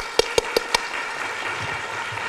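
Sharp hand claps close to a podium microphone, about five a second, stopping just under a second in, over a steady patter of audience applause.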